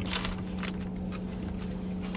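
Mouth-closed chewing of a burger with ruffled potato chips in it, a few crunches in the first second, over a steady low hum in the car cabin.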